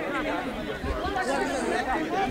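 Background chatter of several voices at once: players and onlookers talking and calling around an outdoor football pitch.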